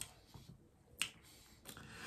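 Faint mouth noises from a man pausing between sentences: a single sharp lip smack about a second in, then an intake of breath near the end.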